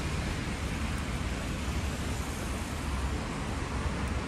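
Steady city street traffic: cars driving on a wet road, an even hiss with a low rumble underneath.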